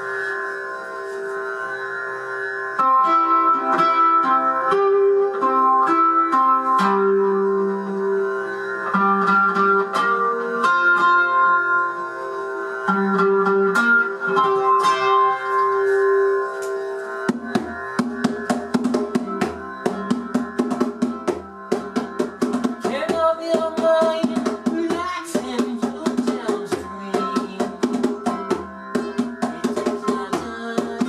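Ukulele music on a single C chord: sustained, sitar-like drone tones with a slowly shifting melody. About 17 seconds in, a hand drum joins with quick, steady strokes under the strummed ukulele.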